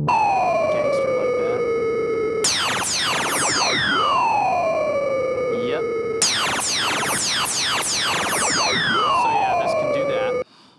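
Native Instruments Monark software synthesizer playing its 'Downlifter' FX preset: siren-like pitch sweeps gliding downward. A dense cluster of falling sweeps starts about two and a half seconds in and again about six seconds in, each over a lower tone that falls and settles.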